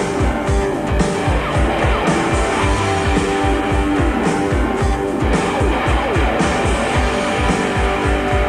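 Rock band playing live without vocals: distorted electric guitar with repeated downward slides over bass and a steady drum beat, on a mono live recording.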